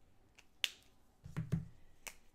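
Copic markers being capped and put down: a sharp plastic click a little over half a second in, then two more clicks with a soft knock as a marker is laid on the table about a second and a half in.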